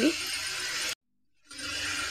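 Steady hiss of oil sizzling around badi (dried dumplings) frying in a pressure cooker. The sound drops out completely for about half a second, a little after one second in, then the hiss returns.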